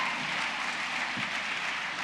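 Audience applauding in a theatre hall, a steady even patter.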